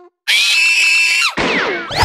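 A high-pitched cartoon scream held at one pitch for about a second, then breaking into several quick falling squeals.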